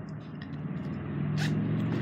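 A car going by outside the window, its low engine and road hum growing louder. A brief click about one and a half seconds in.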